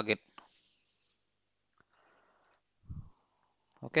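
A few faint clicks of a computer mouse in an otherwise quiet stretch, with a short low thump about three seconds in.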